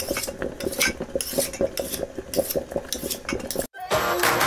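Kitchen utensils clinking and scraping against pots and dishes in a quick, irregular run of clinks, which stops abruptly near the end just before music begins.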